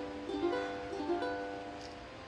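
Ukulele chords played: a few notes and chords struck in the first second, ringing and fading away toward the end.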